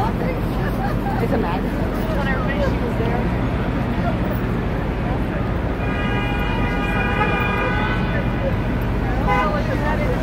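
Busy city street traffic: a steady hum of vehicle engines and road noise, with passers-by talking. Past the middle, one vehicle horn sounds a long, steady blast of about three seconds.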